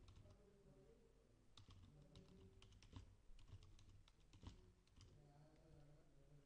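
Faint typing on a computer keyboard, keystrokes coming in short runs.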